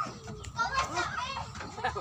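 Children playing: several young voices talking and calling out over one another.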